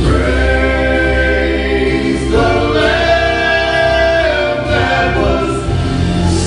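Male gospel vocal group singing in harmony into microphones, holding long notes of a second or two each over a steady low bass accompaniment.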